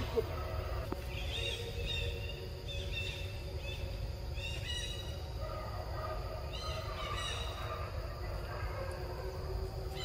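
High, short chirping calls in two clusters, from about one to three and a half seconds in and again around six to seven seconds in, over a steady low outdoor rumble.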